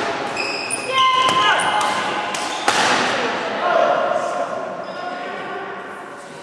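Badminton racket striking a shuttlecock with a sharp crack about halfway through, with short squeaks of shoes on the wooden floor and players' voices in the background, all echoing in a sports hall.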